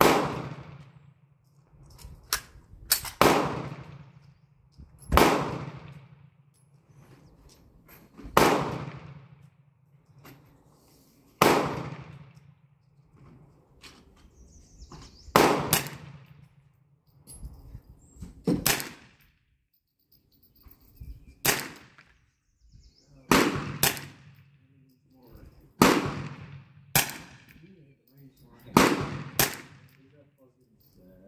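Winchester Model 1903 semi-automatic rifle firing its .22 Winchester Automatic cartridges: more than a dozen sharp shots at uneven intervals of one to four seconds, some in quick pairs, each trailing off briefly.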